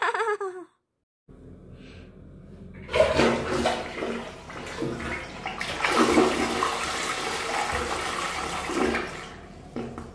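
Ceramic toilet flushing: water rushes into the bowl, swirls around it and drains, starting about three seconds in, swelling a few times and fading near the end. A short voice is heard at the very start.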